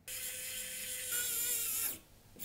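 Screwdriver turning the screw that fastens the M.2 SSD heatsink onto an ASUS ROG Strix X670E-E motherboard. The sound is steady, with a few thin held tones; it starts and stops abruptly and gets a little louder about a second in.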